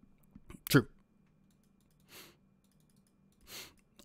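A man says one word ("True"), with a few faint clicks just before it. Then two short, soft breaths follow, about two seconds and three and a half seconds in, in an otherwise near-silent pause.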